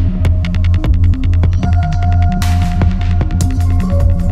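Electronic music from a continuous DJ mix: a deep, throbbing bass pulse under rapid clicking percussion and a sustained synth tone that steps up in pitch partway through.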